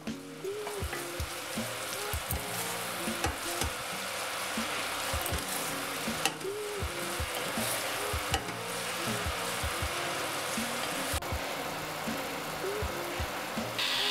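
Green tomato chutney sizzling in oil in a stainless steel pot as it is stirred with a wooden spoon, with frequent scrapes and light knocks of the spoon against the pot.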